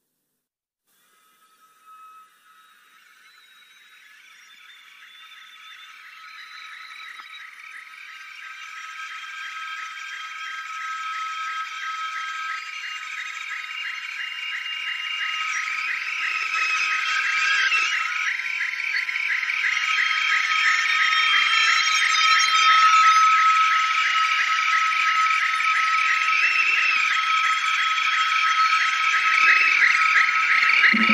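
Album track gap: after a second or so of silence, a high, rapidly pulsing drone with a steady high note fades in slowly and keeps swelling louder, the opening of the next song.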